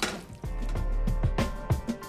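Background music with a steady drum beat comes in about half a second in. Right at the start, a sharp clink of a metal utensil against a ceramic bowl as spaghetti is tossed.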